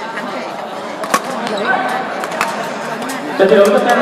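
Badminton racket hits on a shuttlecock during a rally, two sharp strikes a little over a second apart, echoing in a large sports hall over background voices.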